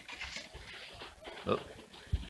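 A man's brief vocal 'oh' about one and a half seconds in, over low, steady background noise.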